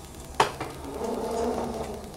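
Lid of a Skutt electric kiln being lifted open: a sharp click about half a second in, then a drawn-out rubbing noise as the firebrick lid swings up.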